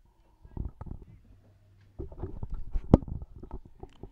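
Handling noise close to the microphone: irregular rumbling rustles and knocks in two spells, with one sharp click about three seconds in, as the camera is moved and reframed.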